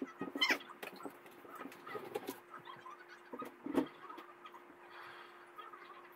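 A girl's laughter trailing off in the first half second, then scattered knocks, taps and rustling of things being handled, with one louder thump near four seconds. A faint steady hum runs underneath.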